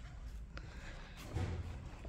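Handling noise from a handheld camera being moved: a low rumble with a faint click about half a second in and a soft dull thump about one and a half seconds in.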